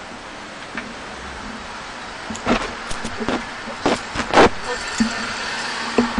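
Steady background hiss of the International Space Station cabin, with a few sharp knocks in the middle seconds, the loudest two close together.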